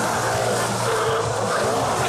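Skateboard wheels rolling and carving on a concrete bowl, a steady rolling roar whose pitch rises and falls as the board speeds up and slows.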